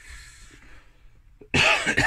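A man coughs once, loud and sudden, about a second and a half in.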